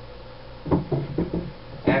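A run of short wooden knocks and clatter about a second in, as a wooden wrist-roller stick is set down on a desk.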